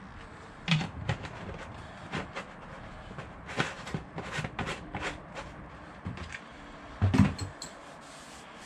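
Plastic oil-filling jug and its hose spout being handled and capped: scattered light plastic clicks and knocks, with heavier knocks just under a second in and about seven seconds in.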